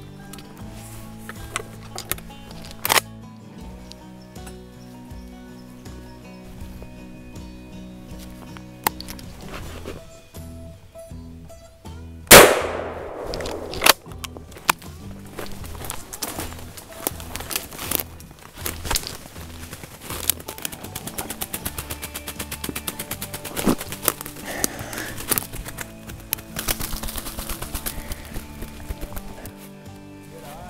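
Background music, with a single shotgun shot at a ruffed grouse about twelve seconds in, the loudest sound, ringing out briefly after.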